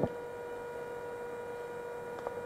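Faint steady electrical hum, a pair of held tones over low background noise.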